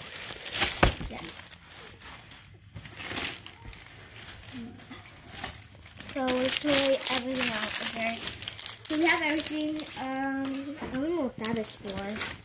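Clear plastic bags of screws and hardware crinkling and rustling as they are handled, busiest in the first half, with a voice talking in the second half.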